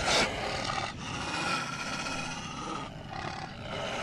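Anime battle sound effects: a sharp hit at the start, then a sustained, noisy roar from a giant summoned creature.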